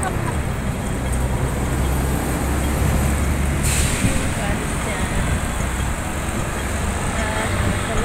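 City street traffic with a bus driving past close by, its engine rumbling for the first few seconds. A sudden short hiss of air comes about halfway through.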